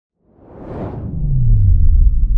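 Logo-intro whoosh sound effect: a rushing swell rising over the first second, then a deep tone that slides down in pitch into a low rumble, getting louder toward the end.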